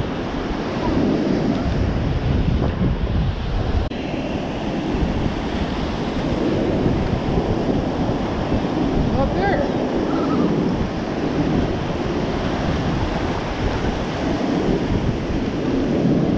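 Ocean surf washing in and breaking along the shore, with wind buffeting the microphone in a steady low rumble.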